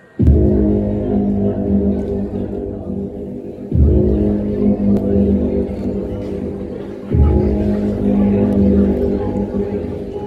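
Loud, dark backing music for a stage mime. It starts abruptly with a heavy low chord, and a new chord is struck about every three and a half seconds, each one slowly fading.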